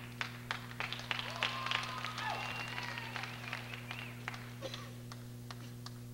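Audience applause in an arena: scattered claps, dense at first, that thin out and stop about five and a half seconds in, over a steady low electrical hum.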